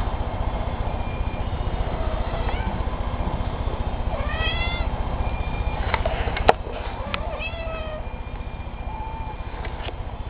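Kittens meowing: three short, rising-and-falling meows, the clearest about halfway through, over a steady low rumble, with one sharp click a little after the middle.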